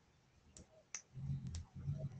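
Quiet room with a few faint, scattered clicks from someone working at a computer, and a faint low hum in the second half.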